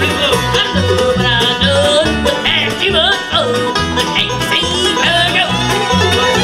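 Live bluegrass band playing, with banjo, fiddle, mandolin, acoustic guitar and upright bass together. A steady beat of bass notes runs underneath.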